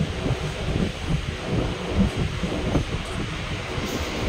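Running noise of a moving passenger train heard from inside the coach by an open door: a steady low rumble of wheels on the rails with irregular knocks, and wind through the doorway.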